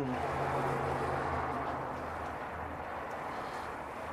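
A steady low hum under a soft, even background noise, easing slightly toward the end.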